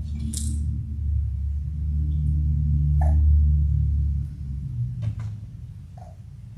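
Low rumble of handling noise on a lectern microphone, building after about a second, loudest about three seconds in and dropping away after about four seconds, with a few faint clicks.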